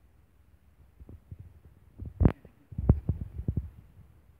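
A run of short, low thumps and knocks: one sharp knock just after two seconds in, then a quick cluster of softer thumps about a second later.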